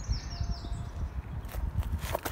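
Low rumbling outdoor noise on the microphone, with a bird's short falling chirps in the first half second and a few sharp clicks about one and a half seconds in.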